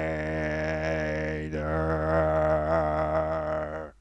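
Time-stretched sample playing from the Reason NN-XT sampler: a sustained, voice-like drone held on one low pitch. Its vowel colour shifts about a second and a half in, and it cuts off abruptly near the end.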